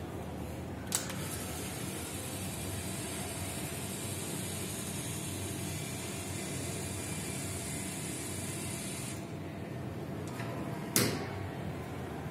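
Lego Mindstorms EV3 robot motors running, a quiet steady whir that starts with a click about a second in and stops about nine seconds in. A sharp click follows near the end.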